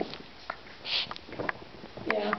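Small dog sniffing right at the microphone: a few short sniffs and clicks, with one longer, louder sniff about a second in.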